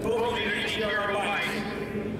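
A man's voice shouting a drawn-out, wavering call into a handheld microphone, amplified, over a steady low hum.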